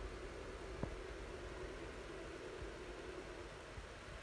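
Pet puma (cougar) purring: a steady low rumbling purr that fades near the end, with a light click about a second in.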